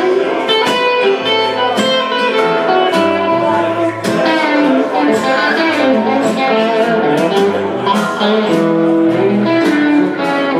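Live band playing: a Stratocaster-style electric guitar plays a run of notes over drums and cymbals.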